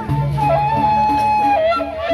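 Sasak gendang beleq ensemble playing: a high wind-instrument line holds long notes and steps down in pitch late on, over a lower, evenly repeating figure.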